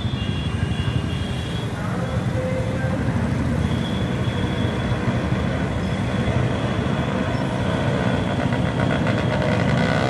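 Street traffic: motorcycles, scooters and cars passing along a wide city road, a steady rumble of engines and tyres.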